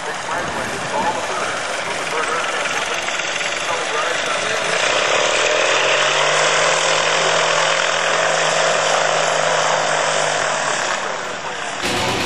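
Light aircraft engine droning overhead, growing louder about five seconds in with a steady pitch that sags slightly, then fading near the end.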